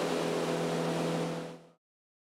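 Outboard motor of a small skiff running at planing speed, a steady hum over the rush of water, fading out about one and a half seconds in.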